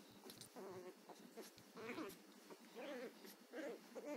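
Chihuahua puppy giving a string of about five short, high-pitched yaps and squeaky growls, each rising and falling in pitch: a very young dog trying out its bark.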